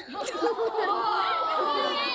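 A group of children chattering at once, many voices overlapping in a large room.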